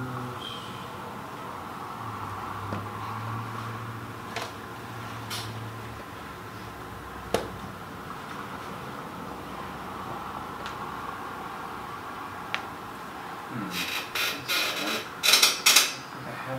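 Steady room hum with a few sharp, scattered clicks, then a quick run of louder clicks and clatter near the end.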